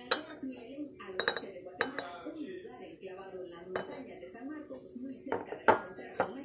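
Porcelain teacup and its pierced-rim china saucer clinking as they are picked up, turned and set down on the table: several sharp china clinks, the loudest near the end.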